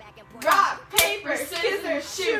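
A single sharp smack of hands about a second in, during a game of rock paper scissors, amid girls' voices and laughter.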